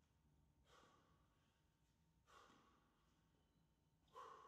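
Near silence, with two faint, breathy exhalations of an athlete breathing hard from exertion, the second a little louder.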